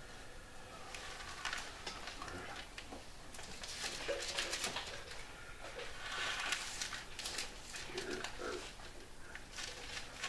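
Faint, scattered rustling and small handling noises in a quiet small room as Bible pages are turned to a passage.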